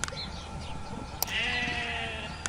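A sheep bleats once, starting just over a second in, a pitched call that falls slightly. Sharp clicks come at the start and just before the bleat.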